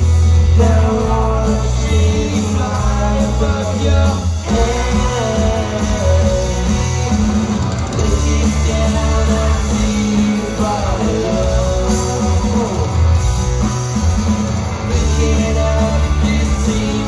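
Live rock band playing loud through a club PA: electric guitar, heavy bass and drums with a singer, heard from within the crowd.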